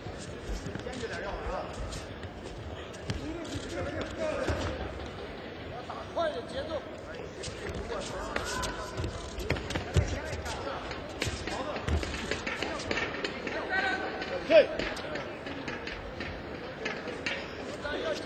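Judoka's feet thudding and shuffling on tatami mats during a grappling exchange, with repeated short thumps, over crowd voices and coaches' shouts; one loud shout about three-quarters of the way through.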